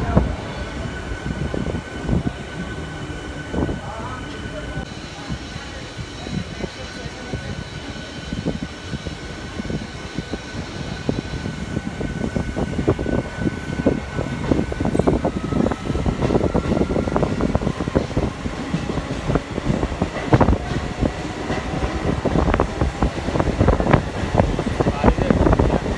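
MEMU electric local train in motion, heard from inside the coach: a rumble of wheels on the track with many small clacks, and a few high steady whines. It grows louder over the second half.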